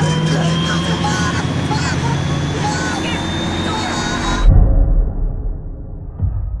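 Film soundtrack: a dense mix of street-chaos noise, vehicle sound and faint steady tones that cuts off abruptly about four and a half seconds in on a deep, loud boom, with the low rumble dying away after it.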